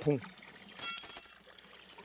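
A small stainless steel bowl clinks and rings briefly, with several high tones, about a second in, over water trickling from a spring spout into a stone basin.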